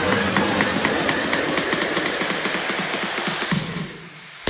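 Electronic dance background music with a steady, quick beat, fading down near the end.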